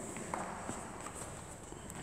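A few faint footsteps on a hard floor over quiet room noise.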